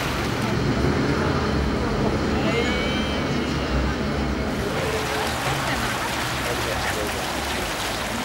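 Fountain water jets splashing steadily into the basin, with indistinct voices of people talking in the background.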